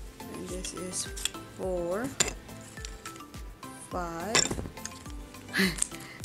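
Wooden puzzle pieces clicking and knocking against each other as the interlocking puzzle is worked apart by hand, a few sharp clicks standing out, over background music with a steady beat.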